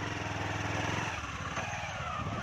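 Motorcycle engine running steadily at low speed as the bike moves off along a rough track, with wind noise on the microphone.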